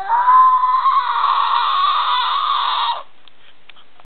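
A girl's loud, high-pitched scream, rising at the start and then held on one pitch for about three seconds before it cuts off.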